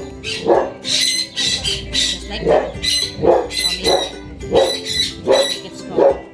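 A dog barking in quick succession, with background music.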